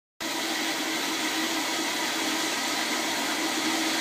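Commercial flushometer toilet running nonstop, a steady loud rush of water with a faint hum through it: the malfunctioning flush valve will not shut off.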